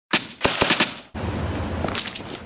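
A rapid run of five or six sharp bangs within about a second, then a steady noisy rumble from about a second in.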